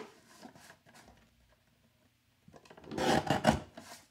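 A guillotine paper trimmer's blade arm pressed down through a sheet of cardstock, giving one rasping cut of about a second near the end, after soft paper handling.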